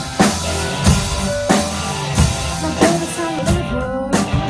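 Rock band playing live: a drum kit keeps a steady beat of about three strokes every two seconds under sustained bass, electric guitar and synthesizer notes.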